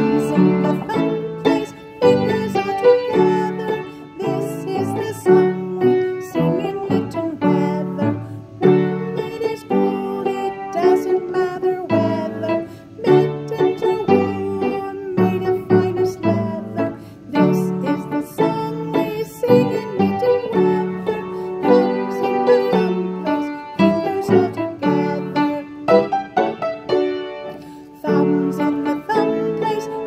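Piano or keyboard playing a simple children's song melody, note after note in a steady tune.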